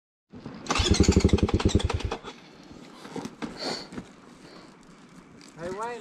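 A four-stroke off-road vehicle engine running in a rapid, even beat of about a dozen pulses a second. It starts about a second in, lasts about a second and a half, then falls away to a faint background.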